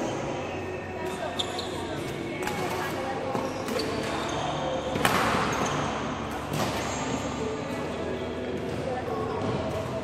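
Badminton play on an indoor court: sharp racket strikes on shuttlecocks, footwork and short shoe squeaks on the court floor, with indistinct voices across the hall. The loudest hit comes about five seconds in.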